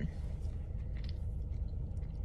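Steady low rumble of a car's engine idling, heard inside the cabin.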